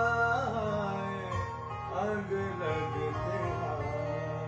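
A male voice singing a Hindustani thumri, holding a note that breaks into wavering, gliding ornaments shortly after the start and again about two seconds in, accompanied by a strummed acoustic guitar.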